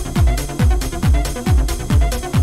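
Electronic dance music from a DJ mix played on turntables: a steady four-on-the-floor kick drum, a little over two beats a second, with each kick dropping in pitch, and hi-hats ticking between the beats.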